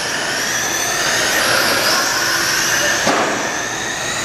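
Several radio-controlled oval race trucks running laps, their motors and drivetrains making a high-pitched whine that rises and falls in pitch as they pass. One sharp click about three seconds in.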